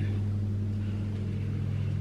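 Bathroom extractor fan running: a steady low hum with a faint rushing over it.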